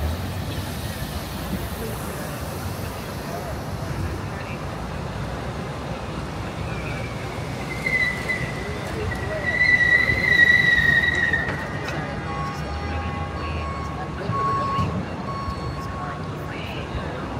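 Steady downtown street traffic noise with a long high-pitched squeal in the middle, the loudest sound, falling slowly in pitch, like train wheels or brakes squealing; fainter broken squeaks follow near the end.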